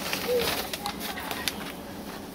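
Handful of dry sphagnum moss and plastic sacks rustling, with scattered faint crackles as the moss is carried to the sieve. A short low tone sounds about a third of a second in.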